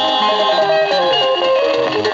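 A 1970s Kenyan guitar-band single playing on a turntable, in an instrumental passage with no singing: plucked guitar lines stepping from note to note over a moving bass line.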